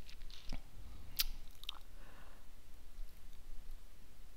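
A few soft, scattered clicks close to the microphone over a faint low hum, bunched in the first two seconds.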